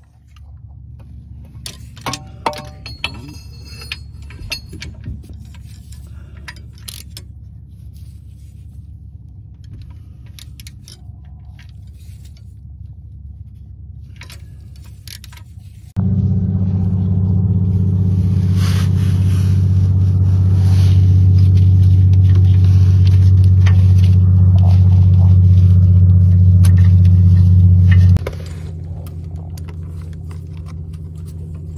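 Metal hand tools clinking and clicking sharply now and then under the car over a low steady hum. About halfway through a much louder steady low droning hum, like a running machine, takes over for about twelve seconds, then cuts off suddenly, leaving a quieter hum.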